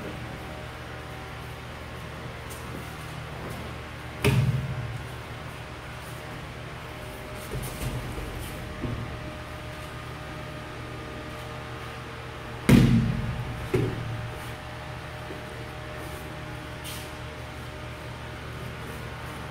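Two loud thuds of a body landing on the training mats as an aikido partner is taken down for an ikkyo pin, the second followed about a second later by a smaller thump, with a few light knocks of feet and knees on the mats between. A steady low room hum runs underneath.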